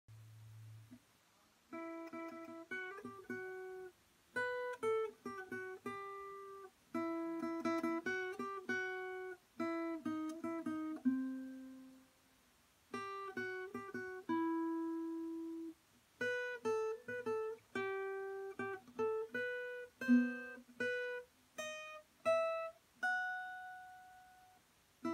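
Acoustic guitar played note by note, a picked melody in short phrases of a few notes each with brief pauses between them.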